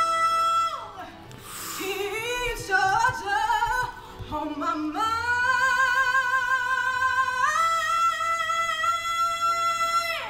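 A female voice belting in an unprocessed, reverb-free recording: a held note that drops away about a second in, a quick run of notes, then a long high note with vibrato from about halfway that steps up in pitch near three quarters through.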